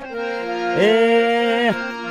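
Harmonium playing sustained chords, joined just under a second in by a man's voice singing one long held note that slides up into pitch and falls away near the end.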